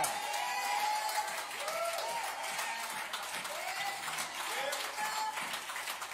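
Church congregation clapping and calling out in praise: steady applause with several short shouted calls over it.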